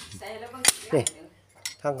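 Steel parts of a sugarcane juicer clinking as they are handled, with one sharp metallic clink a little past half a second in.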